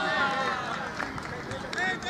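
Several men's voices shouting and calling out at once across a football pitch, the overlapping shouts loudest in the first half second, followed by scattered shorter calls.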